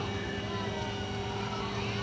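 Steady engine hum with a few constant tones and no change in speed.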